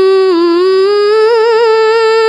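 A Quran reciter's voice in the slow tartil style, holding one long drawn-out vowel unbroken. The pitch dips slightly, then climbs slowly with a small ornamental waver.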